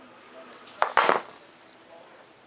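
A sharp click, then a short scraping clatter about a second in: handling noise as the hot glue gun is put down and the foam-board tail fin is set in place.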